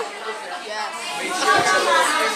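Indistinct chatter of several people talking at once, with one voice growing clearer about one and a half seconds in.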